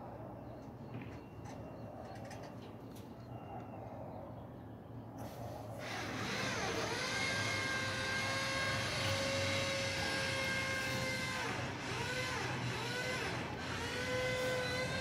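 A faint low hum, then about five seconds in a motor starts up, a steady whine with a hiss over it; near the end its pitch dips and recovers several times, as if under load.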